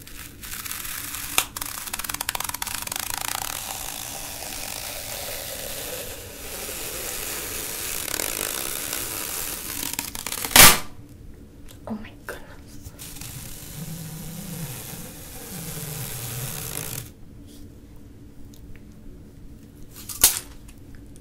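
Duct tape being peeled slowly off the roll: a long, steady sticky ripping for about ten seconds, ending in one sharp, loud crack about halfway through.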